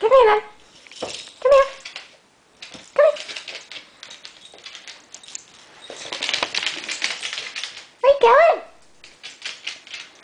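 West Highland terrier puppy's claws clicking and tapping on a wooden floor as it moves about with its toy, with several short high-pitched vocal sounds in between and a rustling stretch about six seconds in.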